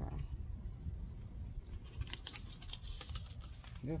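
A quick run of light clicks and rustles from a small paper seed envelope being handled and tapped, starting about two seconds in and lasting about a second and a half, over a low steady rumble.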